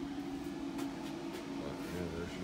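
A steady low mechanical hum with a few faint clicks over it.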